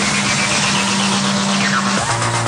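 A car engine running as a steady low hum, with a falling whoosh near the end.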